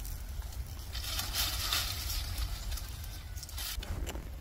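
Outdoor background noise: a steady low rumble with a soft rustling hiss between about one and two and a half seconds in, and a few faint clicks.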